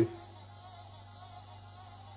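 Quiet pause with a faint, steady low hum under soft room tone.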